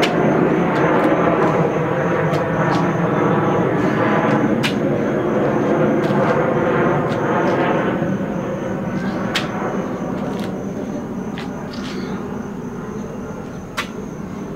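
Loud, steady engine drone that fades slowly over the last few seconds, with a few sharp clicks.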